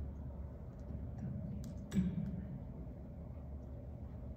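Quiet room tone of a large gymnasium with a steady low hum, a few faint clicks and rustles, and one sharp click just before two seconds in, as the choir and pianist settle before singing.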